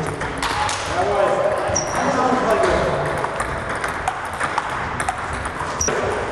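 Table tennis balls striking bats and tables in quick, irregular clicks, from more than one table in play at once.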